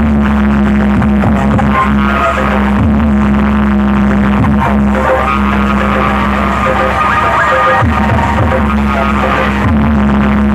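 Loud dance music played over a large DJ sound-box system, with a heavy bass line and a steady low tone held underneath.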